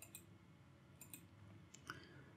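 Near silence with a few faint computer mouse clicks: one at the start, a pair about a second in and another near the end.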